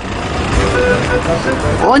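A minibus passing close by and pulling away: a steady rush of engine and tyre noise that builds slightly.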